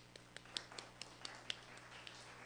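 Faint, scattered clapping from a small audience: a handful of separate, irregular claps rather than full applause.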